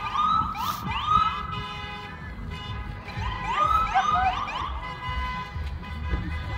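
Emergency vehicle siren in a rapid yelp: quick rising sweeps, repeated over and over, in two bursts, the second about three seconds in. A low rumble runs underneath.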